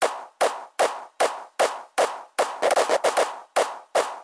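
Opening of a hardstyle track: a dry electronic percussion loop of sharp hits, about two and a half a second, with quick extra hits in between in a shuffling pattern and no bass underneath.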